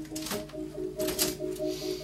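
Manual portable typewriter clacking in a few sharp strokes, over background music with a repeating melody.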